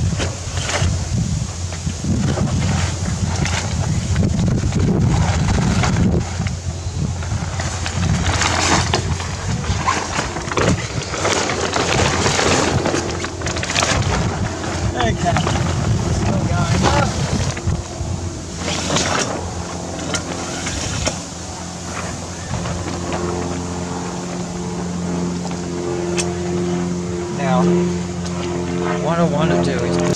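A small dinghy's mainsail rustling and flapping irregularly as it is hauled up the mast by hand on its halyard, with wind buffeting the microphone as a low rumble.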